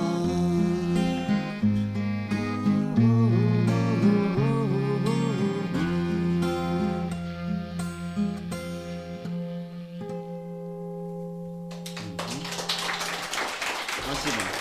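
Acoustic guitar and clarinet playing the closing bars of a song, the melody ending in long held notes that fade out about twelve seconds in. Audience applause starts as the music dies away.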